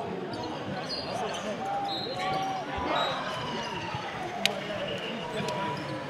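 A basketball being dribbled on a sports-hall court, with indistinct voices of players and spectators in the hall, and one sharp knock about four and a half seconds in.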